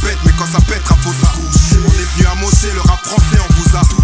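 Hip hop track with French rap vocals over a beat with heavy bass and repeated drum hits.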